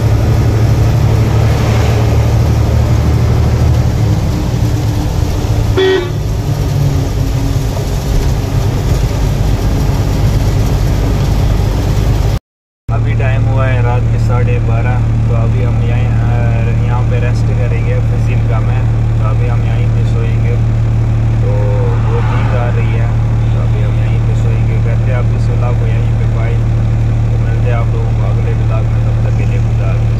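Truck engine running, heard from inside the cab while driving, with a vehicle horn sounding. After a sudden cut the engine keeps up a steady low hum under a man's voice.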